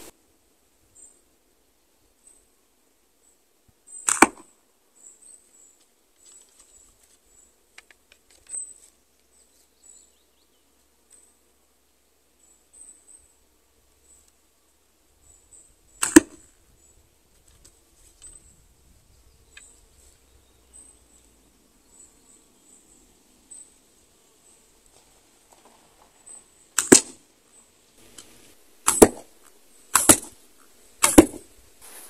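A wooden longbow of about 45 to 48 pounds being shot at a target 6 meters away. Each shot is a single sharp crack. There is one a few seconds in, one about halfway, and two close together near the end, with long quiet gaps between.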